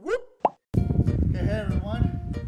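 Cartoon intro sound effects: a sliding pitch that dips and rises again, then a short rising 'plop' about half a second in and a moment of silence. Music with voices comes in after that.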